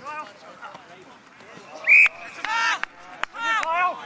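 An umpire's whistle blows once, short and sharp, about two seconds in, followed by two loud shouts from players or onlookers.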